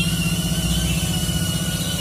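Small diesel tractor engine idling steadily with an even, rapid beat, and a thin steady high whine above it.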